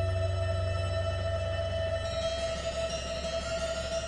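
Music: an ensemble with bowed violins playing long held tones over a low drone, with higher notes coming in about halfway through.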